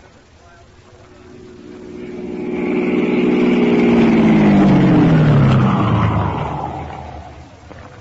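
A car engine passing by: it grows louder over a few seconds, its pitch falling steadily as it goes past, then fades away.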